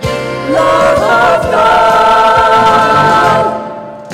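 Voices singing a gospel song over instrumental backing, holding one long chord through the middle that fades away near the end.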